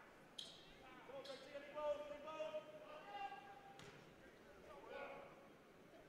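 A basketball bounced a few times on a hardwood gym floor, each knock ringing briefly in the hall. Faint distant voices call out in the gym, one of them a drawn-out call about two seconds in.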